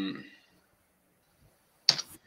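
A man's drawn-out hesitation 'euh' trailing off, then near silence, then one short sharp click near the end.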